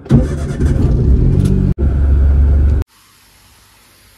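Car engine starting and running, heard from inside the cabin, with strong low rumble. It breaks briefly once and then cuts off suddenly, leaving faint room hiss.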